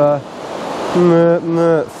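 A man's voice making two short, held sounds at a level pitch, imitating the small bite that a fishing rod tip has just shown. A steady wash of surf runs underneath.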